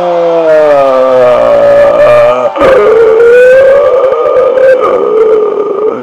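A man singing loudly, holding one long wordless note that slides downward, breaking off about two and a half seconds in, then holding a second, higher long note that cuts off near the end.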